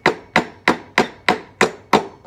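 Claw hammer tapping a small nail into the wooden frame rail of an Orff metallophone: seven sharp, even strikes, about three a second. The nail pins the replacement rubber tubing into its groove.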